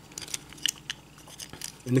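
Faint, scattered clicks and light rattles of hard plastic toy parts, a Transformers Abominus combiner figure, being handled and pressed together.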